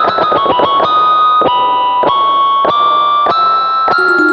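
Instrumental karaoke backing track, a keyboard playing the song's intro melody with no vocals. It opens with a quick run of notes stepping downward, then moves on to longer held notes.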